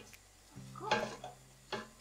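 Wooden spoon stirring and scraping in a stainless steel pot of meat and vegetables with flour, quietly, with a few faint knocks, loudest about a second in.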